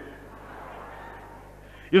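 Low, steady background hiss with a faint hum between a man's spoken sentences. His voice comes back in at the very end.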